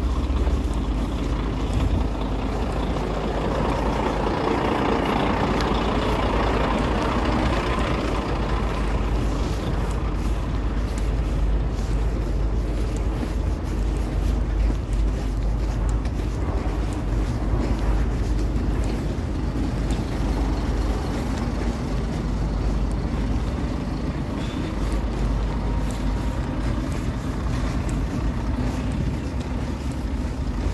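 Heavy trucks' diesel engines idling, a steady low rumble, with a louder rushing noise that swells and fades between about three and eight seconds in.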